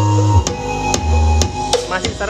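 Music played loudly through home-built speaker cabinets driven by a DIY amplifier kit fitted with Sanken and Toshiba transistors, as a sound check. Deep held bass notes under sharp drum hits about every half second.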